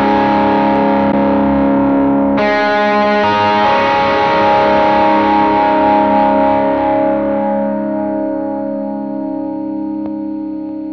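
Fender Stratocaster electric guitar through a Green Screamer overdrive pedal into a VOX AC30 amp capture at the edge of breakup, with hall reverb. One chord rings, a new chord is struck about two and a half seconds in, and it is left to ring and slowly fade.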